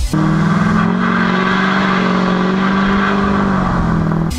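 2005 Chevy Duramax's LLY turbo-diesel V8 pulling away under load: a loud, steady engine drone that rises slightly in pitch over the first second, then holds.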